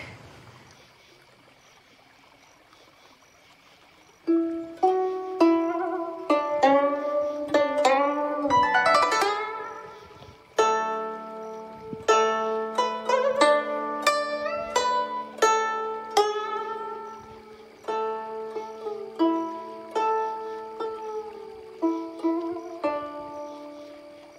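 Chinese plucked zither playing a slow melody of single plucked notes, some bent and sliding in pitch, starting about four seconds in after near silence; a low held tone sounds beneath it from about ten seconds in.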